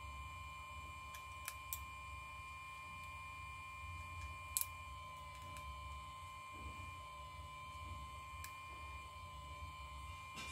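A few small, sharp clicks of metal tweezers against the iPhone's frame and internal parts, the loudest about four and a half seconds in, over a steady faint electrical hum with a thin high whine.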